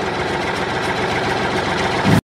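Tractor engine sound effect running steadily, with a rapid, even chugging.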